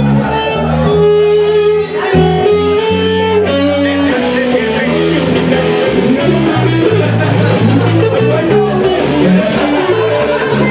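Live band playing: an electric guitar carries the melody in sustained notes over bass guitar and drums, with cymbal hits about two seconds in and near the end.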